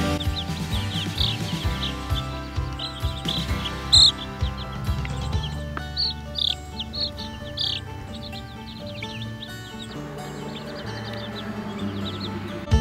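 Background music with baby chicks peeping over it in many short, high notes that thin out after about eight seconds.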